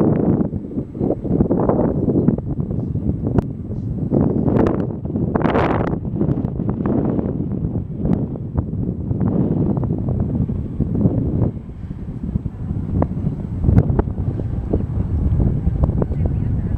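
Wind buffeting the camera's microphone: a loud, gusty low rush that swells and drops every second or so, with a few short clicks.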